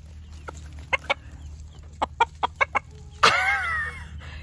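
Chicken clucking in short, sharp notes, a few at first and then a quick run of them, followed near the end by a louder, longer cry that slides in pitch.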